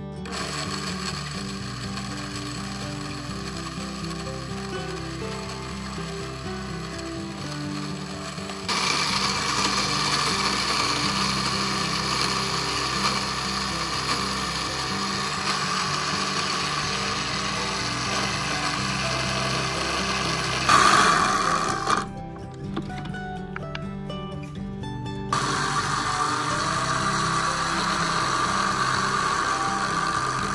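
Over background music, an electric blender's small glass grinding jar starts about nine seconds in, its motor running loud and steady as it grinds roasted cacao beans into powder. The motor stops a little after twenty seconds and starts again a few seconds later.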